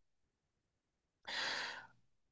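A man's short, audible breath, about half a second long, in a pause between sentences; otherwise near silence.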